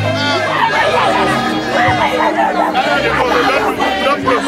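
Many voices talking and calling at once in a dense crowd, over music with held bass notes that shift every second or so.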